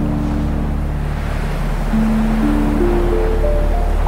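Dark ambient synth music: a low sustained drone under long held notes, with a slow rising run of notes starting about halfway through, over the wash of sea waves.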